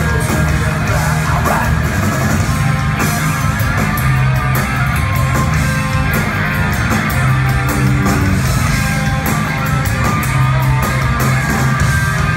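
Live hard rock band playing an instrumental passage without vocals: electric guitars, bass guitar and drum kit with cymbal hits, steady and loud.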